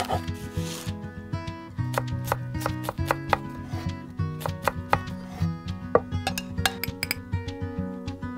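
Tiny kitchen knife chopping tomato and onion on a small wooden cutting board: irregular quick, sharp taps of the blade on the wood, thickest in the second half, over background music.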